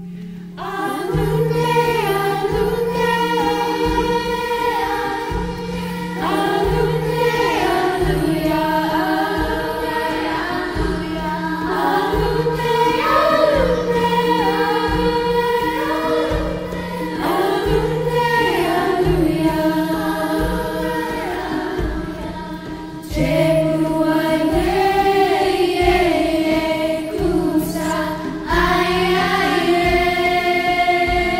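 Girls' chorus singing a slow Swahili lullaby in phrases that rise and fall, coming in about a second in, over a soft guitar and percussion accompaniment.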